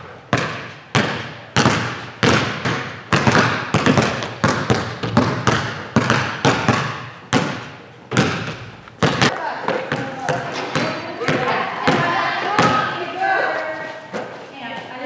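Basketballs bouncing on a gym floor: repeated sharp thuds, about two or three a second, each ringing in the large hall. In the last few seconds the bounces thin out and indistinct voices come in.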